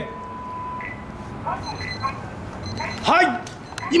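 A time-signal beep: one steady electronic tone held for about a second, followed by a few short, faint voice sounds.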